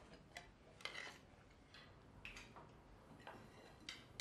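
Faint, scattered clinks of cutlery and crockery at a dinner table, a few short irregular ticks over a quiet room.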